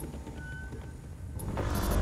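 Low rumbling sound-design effect from a promo soundtrack, swelling into a louder, crackly rush about one and a half seconds in.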